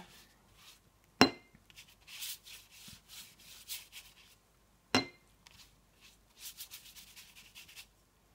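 A large watercolour brush is swept over the paper to wet the whole sheet, making soft, hissy brushing strokes in short runs. Two sharp clicks, about a second in and about five seconds in, are the loudest sounds.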